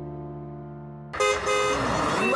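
A held synth chord closes one TV commercial. About a second in, a sudden loud vehicle horn honk opens the next one, with music starting under it.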